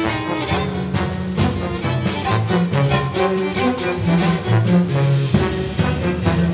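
Jazz ensemble music: brass and bowed strings over double bass, with frequent sharp drum and cymbal strikes.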